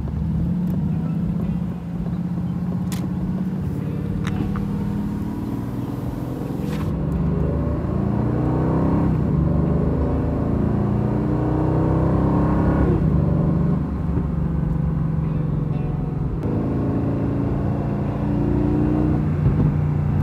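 2019 Aston Martin Vantage's twin-turbo V8, heard from the cabin, pulling away and accelerating. The engine note climbs and drops back twice, at upshifts about nine and thirteen seconds in, then settles to a steady cruise.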